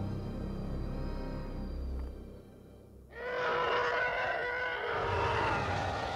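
Ominous film score with low drones, fading out about two and a half seconds in. About three seconds in, a TIE fighter's shrieking engine sound starts suddenly and holds.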